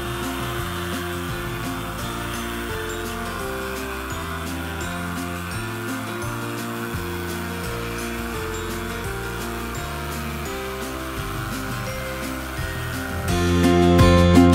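Background music with steadily changing chords over the steady whir of an electric detail sander running on a wooden tabletop. The music grows louder near the end.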